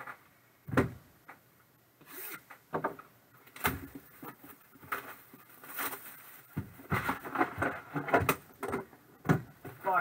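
Handling sounds on a table as trading-card boxes are moved: a sharp knock about a second in, another about four seconds in, a busy patch of clatter in the second half, and a last knock shortly before the end.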